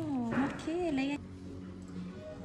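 A woman's voice in a drawn-out, sliding exclamation with no clear words. The pitch falls, then rises and dips, and the sound cuts off just after a second in.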